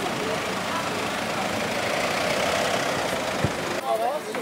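A vehicle engine idling steadily under indistinct voices, with a single short knock about three and a half seconds in.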